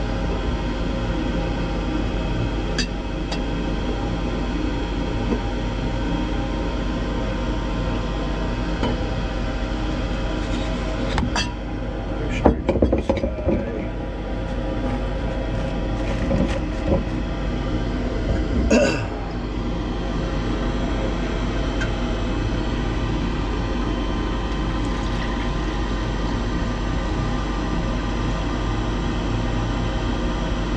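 A steady machine hum runs throughout. A few glass knocks and clinks come about 11 to 14 seconds in, more around 16 to 17 seconds, and a sharper one near 19 seconds, as laboratory glassware is handled and set down on the bench.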